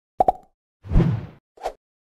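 Intro-animation sound effects: two quick plops in quick succession, then a deeper swoosh lasting about half a second, then a single short plop near the end.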